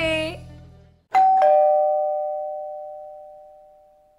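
A two-note ding-dong chime of the doorbell kind, a higher note about a second in followed by a lower one, both ringing and fading away slowly over about three seconds.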